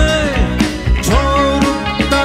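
A rock band playing live, between sung lines: electric guitar, bass, keyboards and drums, with a melody that slides between notes over a steady beat.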